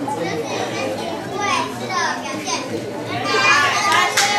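Children's voices and indistinct chatter in a large hall, with no clear words.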